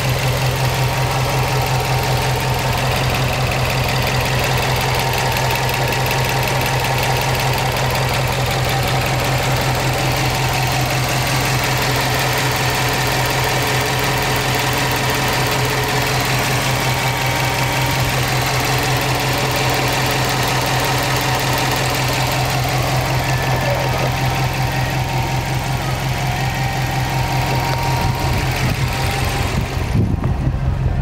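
Subaru Impreza WRX's 2.0-litre turbocharged flat-four engine idling steadily, with an even low pulse.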